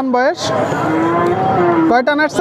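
A cow mooing once, a long, steady, low call of about a second and a half, over the hubbub of a crowded cattle market.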